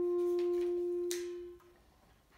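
Bass clarinet holding a single soft, nearly pure-toned note that fades away after about a second and a half, with a short noise about a second in.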